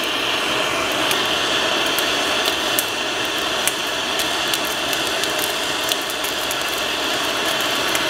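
Handheld MAP-gas torch burning with a steady hiss as it spot-heats the sheet-steel AK receiver at the ejector for hardening, with scattered small ticks and pops through it.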